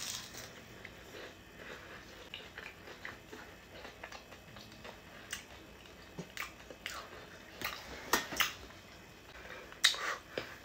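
Biting into and chewing a fried potato hash brown: sharp, scattered crunches, with a cluster of them in the second half.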